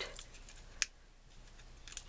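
Faint rustle of a popped rubber balloon being peeled away from glue-stiffened cotton string and worked out of the string ball by hand, with one sharp click a little under a second in and a smaller tick near the end.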